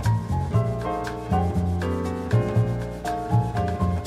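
Bossa nova jazz recording: piano chords and melody over a bass line that changes note every half second or so, with light percussion ticking steadily through it.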